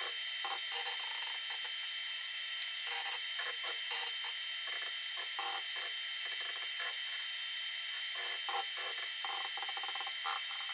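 Tormach 1100MX CNC mill's axis drives moving the table in short jog bursts while a dial indicator is brought to zero, over the machine's steady high-pitched hum.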